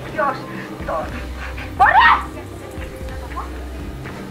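A woman's voice: a few short vocal sounds, then a loud, rising cry of 'eeey' about two seconds in, over low background music.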